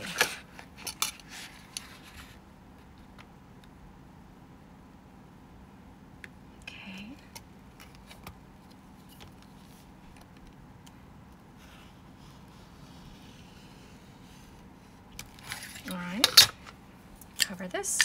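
A pen-style craft blade lightly scoring thick laminate along a metal ruler, faint scratches and ticks, with clicks near the start. About sixteen seconds in comes a loud metallic clatter as the brass ruler is put down on the table, with a few more sharp clicks near the end.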